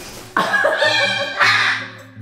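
Hyacinth macaw squawking, a run of loud harsh calls that starts suddenly about a third of a second in, the second stretch the loudest, over background music.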